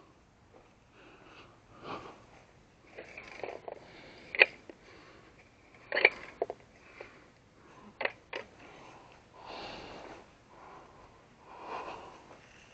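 A rake-and-pan pooper scooper working dog droppings off dry grass. The rake swishes through the turf, with several sharp metallic clinks where the rake knocks against the metal pan.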